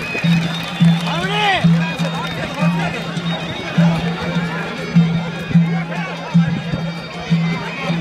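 Folk music played live on reed pipes over a steady drone, with a drum beat landing a little under twice a second, and crowd voices underneath.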